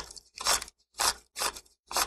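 Scissors snipping in a steady rhythm, about two short rasping cuts a second.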